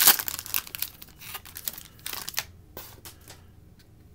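Foil wrapper of a Bowman Chrome baseball card pack crinkling and tearing as it is peeled open, loudest at the start and thinning out over the first two seconds. A few faint rustles and clicks follow as the cards are slid out of the pack.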